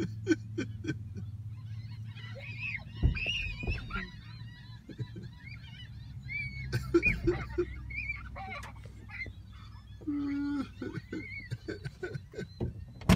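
A flock of domestic fowl calling over one another, many short squawks and honks overlapping, over a steady low hum, with a few knocks and a held honk-like note for about half a second near the end.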